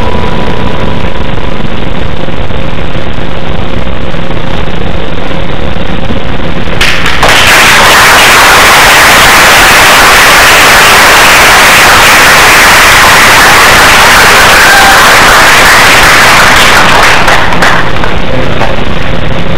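Audience applauding, the recording overloaded and distorted, growing much louder about seven seconds in as the act ends.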